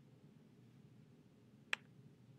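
A single sharp computer mouse click, about three-quarters of the way through, against faint room tone.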